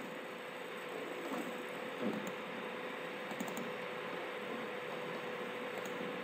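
Steady microphone hiss with a faint steady hum, broken by a few faint clicks about two and three and a half seconds in.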